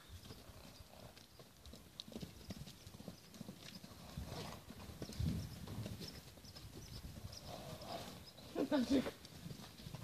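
Faint, irregular hoofbeats of several loose horses cantering and trotting over soft, snow-dusted muddy ground.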